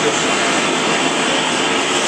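Handheld gas torch burning with a steady hiss of flame, preheating an aluminium swingarm to drive the moisture out of the metal before welding.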